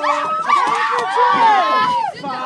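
Several women whooping and squealing in high calls whose pitch rises and falls.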